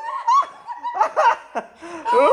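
Young women laughing hard in short, high-pitched bursts.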